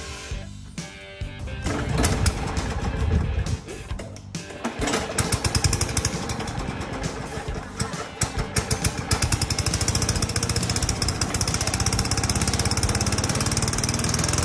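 A Craftsman 4.5 hp push mower's single-cylinder engine starts and runs with rapid, even firing pulses, settling into a steady run in the second half. Background music plays under it.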